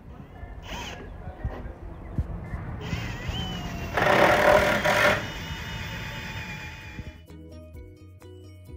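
Cordless drill running for about a second around the middle, driving a screw into a grated decking panel. Background music with a steady rhythm comes in near the end.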